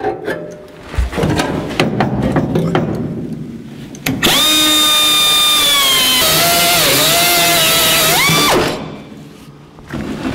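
Knocks and clatter, then about four seconds in a cutoff wheel spins up and cuts into the steel floor pan. Its whine drops in pitch as the wheel bites into the metal, climbs again near the end, and cuts off about a second and a half before the end.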